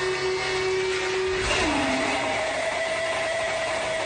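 Beatless intro of an electronic track: sustained synthesizer tones held steady. About a second and a half in, one tone slides down in pitch while a higher held tone comes in.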